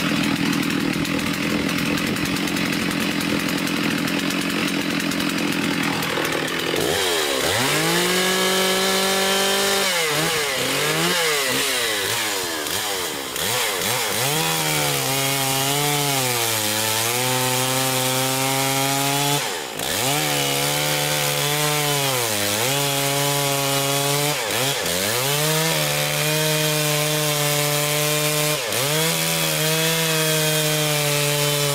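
Two-stroke chainsaw at full throttle, cutting into a log with a freshly ground 15-degree chain. The engine holds a steady pitch for the first several seconds, then its pitch sags again and again as the chain bites into the wood, recovering each time.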